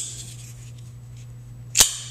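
Two sharp metallic clicks from a Kershaw Nerve folding knife, a small one at the start and a louder snap just before the end, as the blade swings open and the steel liner lock engages.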